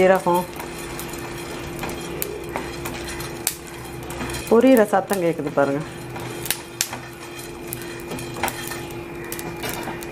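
Black peppercorns and other whole spices dry-roasting in a hot pan, crackling and popping in scattered sharp pops. The crackling is the sign that the pepper is roasting properly for the masala.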